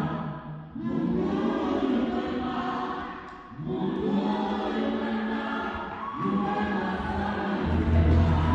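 Gospel choir singing long held phrases in three swells, with little low accompaniment beneath them. The full band, bass included, comes back in just before the end.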